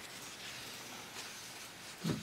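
A quiet pause: faint room tone and hiss in a small broadcast studio, with only a couple of very soft small noises.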